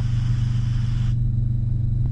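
Piston helicopter's engine and rotor running with a steady low drone, heard in the cockpit. A hiss over the top cuts off abruptly about a second in.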